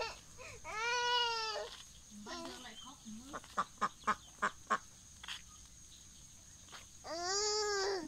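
A toddler's voice: two long whining calls, each rising then falling in pitch, one about a second in and one near the end. Between them comes a run of five quick sharp clicks.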